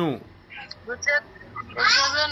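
A person's voice speaking in long, drawn-out syllables. It trails off just after the start and starts again near the end, with a short quiet gap in between holding a few faint, brief sounds.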